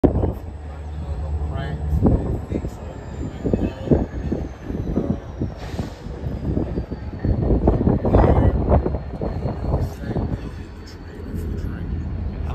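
Freight train cars and locomotive: a steady low rumble with many irregular clanks and knocks. A faint high whine slowly falls in pitch over the first eight seconds.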